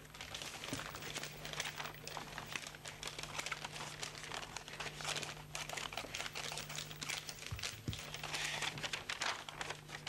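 A sheet of paper being handled, folded and creased, giving a continuous irregular crinkling and rustling.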